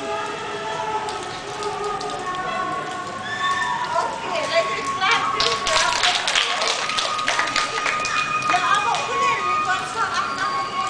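Young girls' voices talking and calling out over one another. From about four seconds in there is a rapid run of sharp taps.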